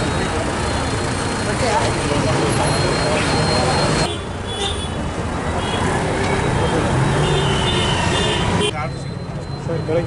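Road traffic on a busy street, with autorickshaw and motorbike engines and voices in the background. About four seconds in it cuts abruptly to the chatter of a crowd, and cuts again near the end.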